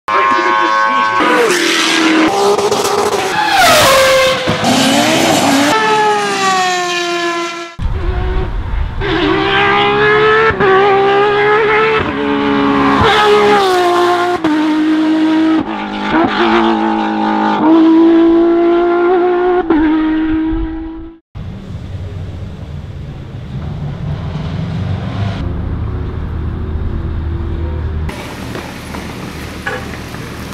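Porsche 997 GT3 rally cars' flat-six engines revving hard at full throttle, the pitch climbing and dropping back again and again through gear changes. After a sudden cut about two-thirds of the way in, a lower, steady engine rumble at idle.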